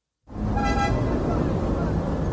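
Street-traffic sound effect opening a segment bumper: steady traffic noise that starts suddenly after a moment of silence, with a short car-horn toot about half a second in.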